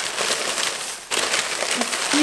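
A shopping bag crinkling and rustling as items are dug out of it by hand, with a brief pause just after a second in.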